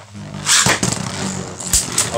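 Plastic Beyblade Burst spinning tops whirring in a plastic stadium. About half a second in, a second top is launched late, a mislaunch, and lands with a loud scraping burst. Sharp clacks follow as the two tops hit each other.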